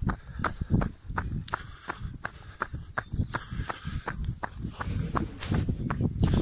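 A runner's footsteps: running shoes striking hard ground at a steady pace of about three steps a second. A low rushing noise on the microphone builds near the end.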